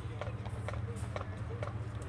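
Sharp clicks about twice a second at a marching tempo, like drumsticks tapping time for a marching band, over a steady low rumble of wind and stadium noise.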